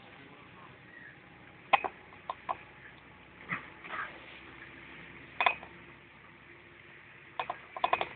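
Steady running noise inside a moving bus, broken by several short, sharp sounds scattered through it.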